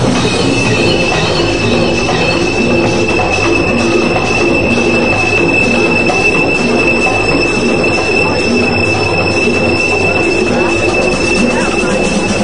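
Loud electronic dance music: a single high synthesizer tone held for about eleven seconds, fading near the end, over a pulsing, repeating lower synth and bass pattern.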